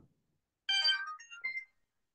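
A short electronic notification chime or ringtone snippet from a phone or computer: a quick run of several high, clean notes lasting about a second.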